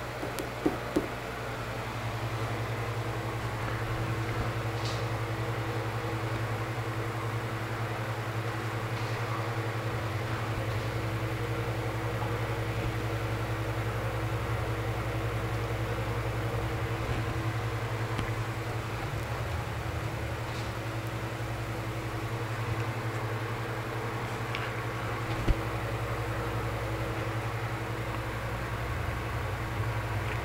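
A steady low mechanical hum, with a few sharp clicks near the start and one more past the middle.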